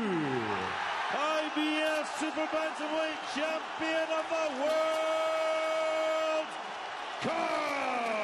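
Boxing ring announcer calling out the new champion over the arena PA in a long, drawn-out delivery, with held notes and a sweeping fall in pitch at the start and again near the end, a crowd cheering underneath.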